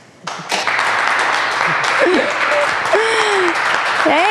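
Audience applauding, starting suddenly just after the start, with a few short shouted cheers over it.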